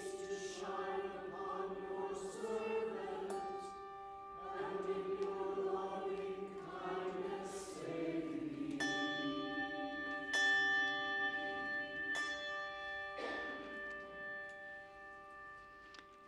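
Choir chanting a psalm with organ accompaniment. About eight seconds in the singing phrase ends and held chords sound on, fading out near the end.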